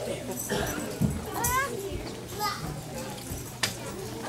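Children's voices chattering in a hall, with a high child's voice rising in pitch about one and a half seconds in and again shortly after. There is a sharp click near the end.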